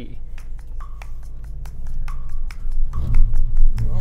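Ford Bronco Sport's turbocharged four-cylinder engine running at low speed off-road, with scattered clicks over its steady drone. The engine gets louder about three seconds in as the vehicle starts up a steep climb.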